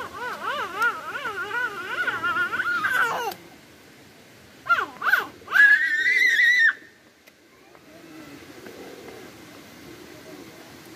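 A toddler's high voice babbling in a rapid up-and-down warble for about three seconds. After a short pause come two quick squeals and then a long, high-pitched shriek of excitement, about a second long.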